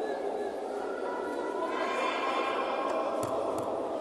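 Crowd chatter and voices in a large echoing sports hall, with one voice rising clearly above the murmur about halfway through. Two short sharp sounds come near the end.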